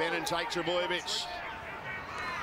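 Speech only: a rugby league TV commentator calling the play, heard at a lower level than the nearby talking.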